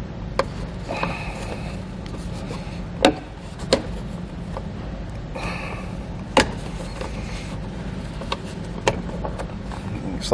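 Plastic trim cap on a truck's sun visor mount being pried off and handled: about five sharp plastic clicks and some rubbing, over a steady low hum.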